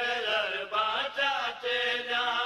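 Men's voices chanting a Saraiki devotional qaseeda, a melodic recitation broken by short breaths between phrases.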